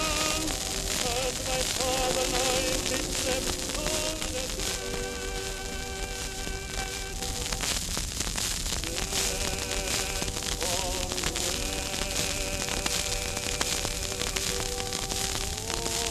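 An old record playing on a turntable: a song recording with long, wavering held notes under heavy surface crackle and hiss. The music pauses briefly about halfway through, then goes on.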